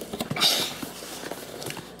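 Plastic-wrapped mushroom substrate block sliding into its cardboard box: a short rustling scrape about half a second in, then softer rustling and light knocks as it settles.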